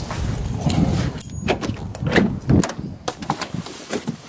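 A 2019 Ford Focus's driver door being opened and someone climbing into the seat: a run of clicks, knocks and rustles, with a brief jingle of keys.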